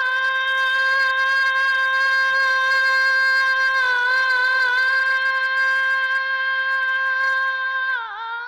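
A female singer holding one long high note into a microphone, steady in pitch with a slight waver about four seconds in and a short dip in pitch at the end.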